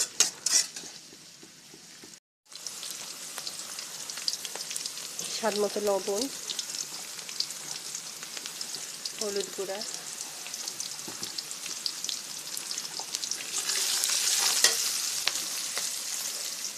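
Sliced onions, garlic and green chillies sizzling in hot oil in a wok, stirred with a metal spatula that scrapes and taps the pan. The sound cuts out briefly about two seconds in, and the sizzle grows louder near the end.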